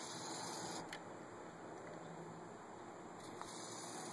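Low, steady background hiss with no engine running, and a faint click about a second in and another near the end.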